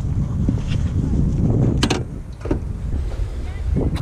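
Wind rumbling on a helmet-mounted action camera's microphone, with a sharp click a little before halfway and a fainter one shortly after.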